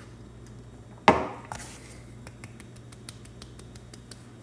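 An empty glass shot glass set down with one sharp knock about a second in, followed by faint quick ticking.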